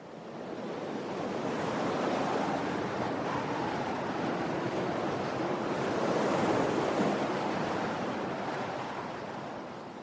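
Storm wind and rough sea: a steady rushing roar that swells in over the first couple of seconds and fades away near the end.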